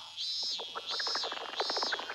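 Cartoon summer-heat sound effects: a cicada chirring in high pulses, about three in two seconds, over a dense patter of short rising electronic pips that marks the sweltering heat.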